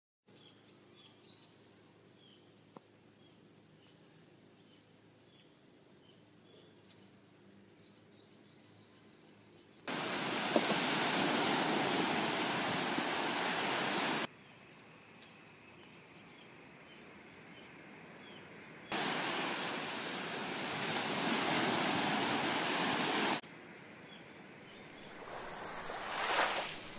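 Cicadas buzzing steadily in trees, a continuous high-pitched drone. It is twice cut off abruptly by several seconds of surf washing onto a beach, about ten seconds in and again near twenty seconds.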